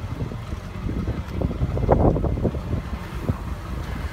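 Wind buffeting the microphone outdoors: an uneven, gusting low rumble with no clear pitch.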